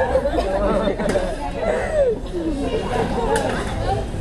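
Voices talking throughout: speech and chatter that the recogniser did not write down.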